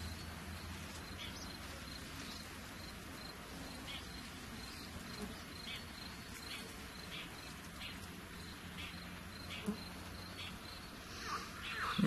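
Faint outdoor ambience: an insect chirping in short, repeated pulses over a low, steady rumble.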